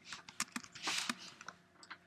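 Faint, irregular clicks of a computer keyboard: a handful of separate key presses, with a short rustle about a second in.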